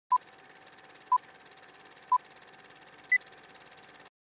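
Film-leader countdown sound effect: four short beeps a second apart, the first three at one pitch and the fourth higher, over a faint steady hiss.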